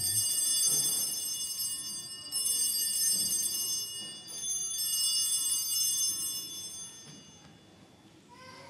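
Altar bells rung three times, about two and a half seconds apart, each a bright high ringing that fades away. They mark the elevation of the chalice at the consecration.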